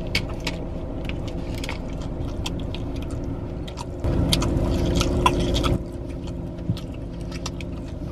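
A man biting and chewing crunchy food close to the microphone, a run of crisp crunches and wet mouth clicks that grows louder for a couple of seconds about halfway through. A steady low hum runs underneath.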